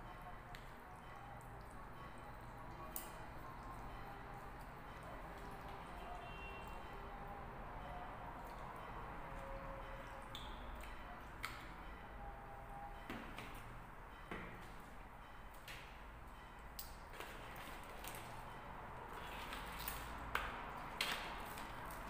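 Quiet eating sounds: a plastic fork clicking and scraping against a plastic takeaway bowl of spaghetti, over a steady low room hum. The clicks and rustles come more often and louder in the last couple of seconds.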